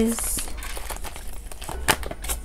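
Paper banknotes and a clear plastic binder pouch being handled, crinkling, with a sharp click near the end.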